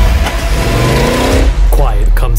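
Trailer sound design: a deep low rumble under a rising pitched tone that climbs for about a second and then cuts off. A voice starts speaking near the end.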